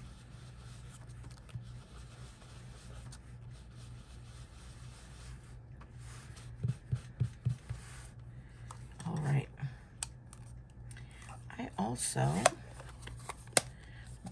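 Blending brush scrubbing and dabbing ink onto cardstock, a soft papery rubbing, with a quick run of four or five light taps about halfway through.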